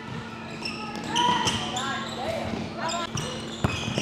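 A basketball bouncing on a hardwood gym floor during a game, with players' voices in the background.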